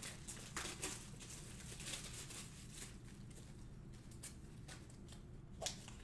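Faint handling noise: a few light taps and rustles, scattered and well apart, over a low steady room hum.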